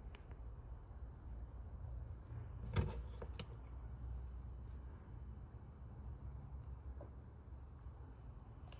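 Quiet handling noise over a steady low hum: filament being fitted into short PTFE (Teflon) tubes, with a couple of faint clicks about three seconds in.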